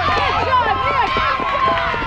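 Several high-pitched voices shouting and cheering at once, overlapping, with quick rising and falling calls: a women's softball team's chatter on the field.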